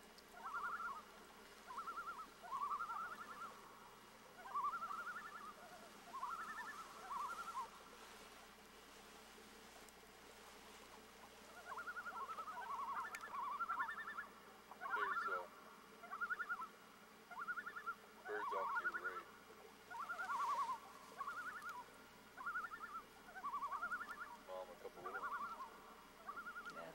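Agitated birds calling over and over in short, quavering cries, with a lull in the middle. They are alarm calls from birds disturbed near their nest.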